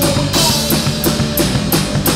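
Live rock band playing, the Tama drum kit to the fore, its cymbals and drums struck in a steady beat of about three hits a second over the rest of the band.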